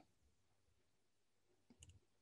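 Near silence, with a few faint clicks close together near the end.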